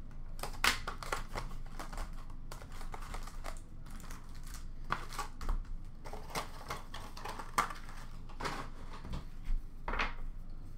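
A box cutter slitting the plastic wrap of a sealed hockey card box, then cardboard and wrappers rustling and crinkling as the box is opened and its packs are handled, in a string of short scratchy clicks.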